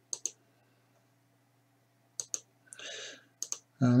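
Computer mouse button clicks: a quick pair at the start, two more a little past halfway and another pair just after, with a short soft hiss between them. A faint steady hum runs underneath.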